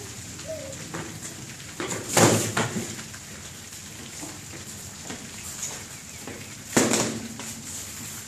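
Foam swords striking during sparring: two sharp whacks, one about two seconds in and one near seven seconds, with lighter knocks between.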